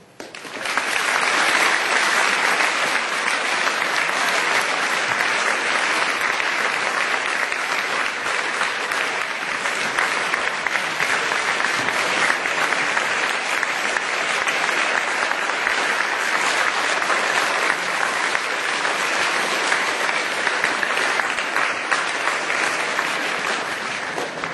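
A large crowd applauding in a gymnasium: a standing ovation that starts abruptly about half a second in and keeps going at a steady, loud level.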